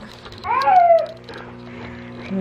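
A toddler's brief high-pitched whine, falling in pitch over about half a second, starting about half a second in.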